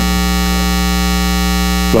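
Sustained synthesizer pad holding one steady chord, with no change in pitch or loudness.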